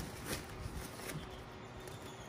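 Faint rustling and handling noise of a fabric storage bag being pulled open by hand, with a few soft scuffs early on.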